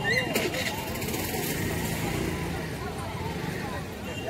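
Crowd voices chattering on a busy road, with a motor vehicle engine running under them. A short clatter comes just after the start.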